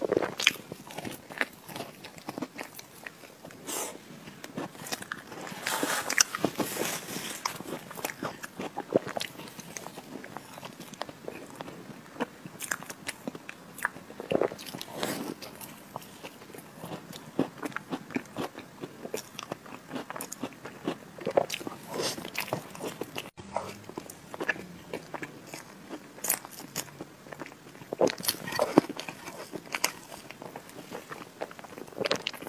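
Close-miked eating of chocolate Oreo cake: repeated big bites and chewing, with scattered short clicks and crackles from the cake and crumbs.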